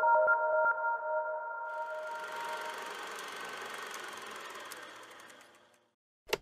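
Outro logo sting: several bell-like synthesized tones ringing out together and slowly dying away. A shimmering wash swells in about two seconds in, and the whole sound fades to silence shortly before the end.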